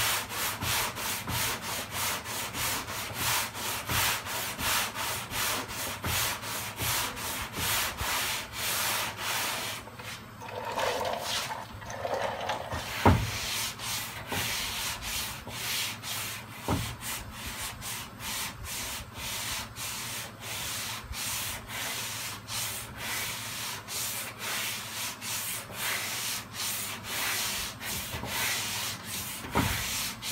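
Sandpaper on a hand sanding block rubbed back and forth over a car door's bodywork, about two rasping strokes a second: final block sanding to level the panel before primer. The strokes break off briefly about ten seconds in, and a sharp knock just after that is the loudest sound.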